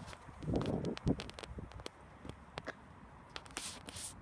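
Handling noise from a hand-held recording: scattered light clicks and taps, a short rustle about half a second in, and a brief hiss near the end.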